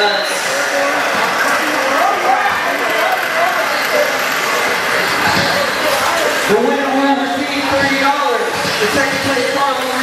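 People talking, with a man's voice louder in the second half, over the steady running of electric radio-controlled sprint cars racing on a dirt oval.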